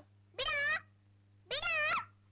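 Kitten meowing twice, short high cries that rise and fall, about a second apart.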